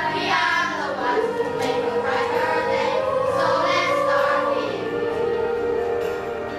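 Children's choir singing an English song together, holding a long note near the end.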